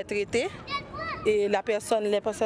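Mostly speech: a woman talking in French. Children's high voices call out briefly in the background, about half a second to a second in.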